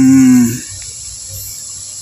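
A man's drawn-out spoken word trailing off about half a second in, then a steady high cricket chirring over faint room noise.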